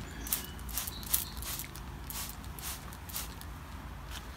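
Hand trigger spray bottle squirting sugar water onto a screened package of honeybees to calm them, a string of short hissing spritzes about two a second.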